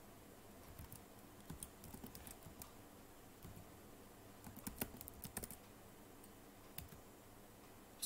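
Faint typing on a computer keyboard: two short runs of keystrokes, the first about a second in and the second around the middle, then a single keystroke shortly before the end.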